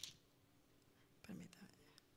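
Near silence, with a short rustle of Bible pages being turned at the start and a soft whispered mutter into a handheld microphone about a second and a half in.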